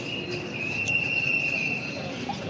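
A continuous high-pitched whine holding one pitch with only slight wavers, over a background of street noise.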